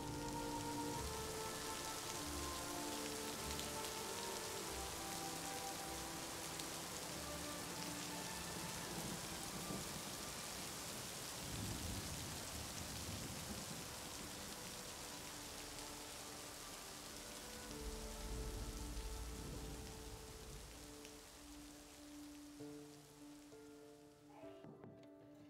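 Steady rain falling, under soft background music of long held notes. The rain grows quieter near the end.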